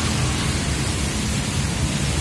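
Steady, loud hiss of noise with a low rumble underneath, even throughout with no distinct events.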